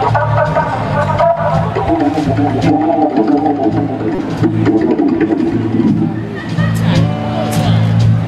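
Live blues band playing: organ-voiced keyboard, electric bass and drums with cymbals, and a woman singing from about two seconds in until about six seconds; the organ chords come forward again near the end.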